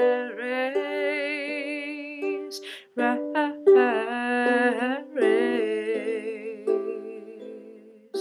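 A woman singing long held notes with vibrato, accompanied by a ukulele.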